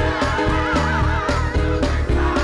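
Live gospel music from a church band and choir: a steady, repeating bass line under a high lead line that wavers up and down in pitch.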